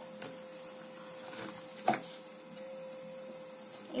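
Quiet room with a faint steady hum, broken by a light tap and then a sharper click about two seconds in, from gloved hands handling the slime supplies.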